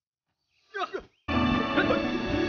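A short, sharp shout from a martial artist comes just before the middle. Then background music cuts in suddenly and carries on, with more shouts over it.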